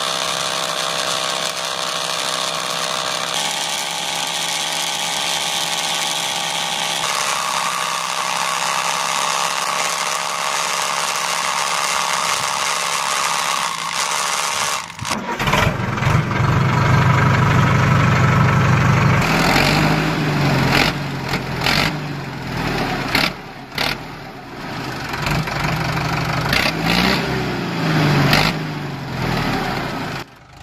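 A homemade miniature thresher's small motor runs steadily with a rattling hiss of grain passing through it. About halfway, a louder, low tractor-engine sound takes over, idling and revving up and down, with scattered clicks.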